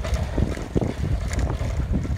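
Wind buffeting the microphone of a phone carried on a moving bicycle: a steady low rumble with a few faint clicks.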